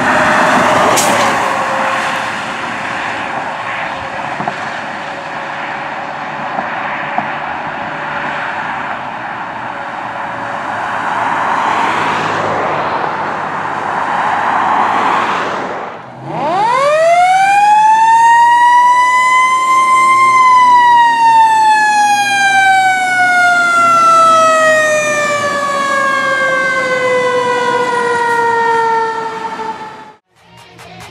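Road traffic noise as an ambulance and cars pass, swelling and fading, with a faint steady tone underneath. About halfway through it breaks off. A mechanical fire-truck siren then winds up steeply to its peak and coasts slowly back down in pitch.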